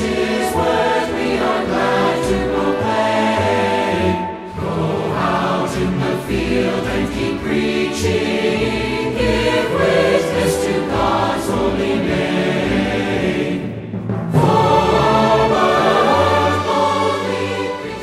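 Choir singing over instrumental music. It dips briefly about four seconds in, drops out for a moment near fourteen seconds, then comes back louder.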